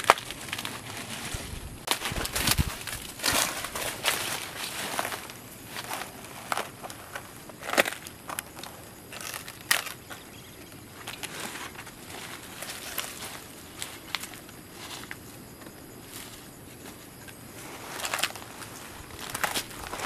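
Dry, dead oil palm fronds and frond bases being pulled apart and broken by hand: irregular crackles, snaps and rustling, with a few louder cracks.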